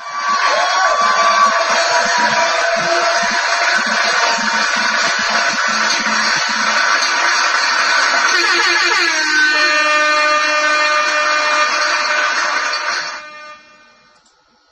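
A loud, dense blare of air horns, as in a DJ sound-effect drop. About nine seconds in, a sweeping pitch glide gives way to steadier held horn tones, and the sound stops about a second before the end.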